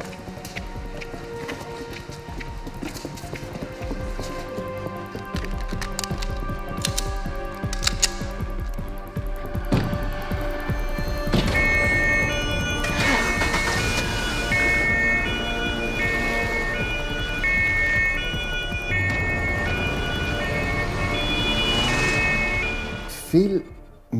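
Background music, joined about halfway through by a police car's two-tone siren alternating between two pitches.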